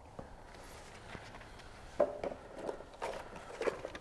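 Black plastic airbox being handled and pulled apart: a few light knocks and clicks of hard plastic, starting about halfway through.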